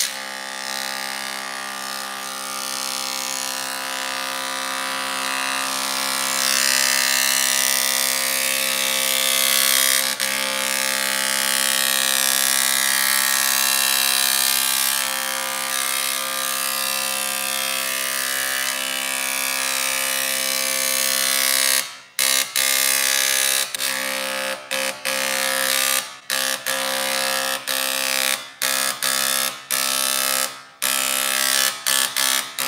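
PEQD-120 electric dot peen marking machine engraving a sample: its needle hammers the plate at a fast, even rate, giving a loud, steady, buzzing note. From about 22 seconds in, the buzz stops and restarts in many short breaks.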